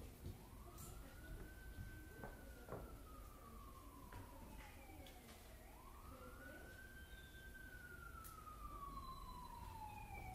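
Faint emergency-vehicle siren in wail mode: each cycle rises quickly, then glides slowly down over about four seconds, and it goes through about two cycles. A few faint clicks sound along with it.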